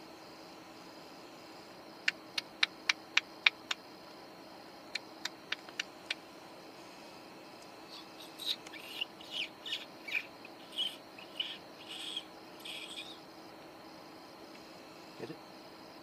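A barn owl giving a series of short raspy calls, one after another for about five seconds, starting about halfway through. Before the calls come two runs of sharp clicks: about seven evenly spaced, then four more.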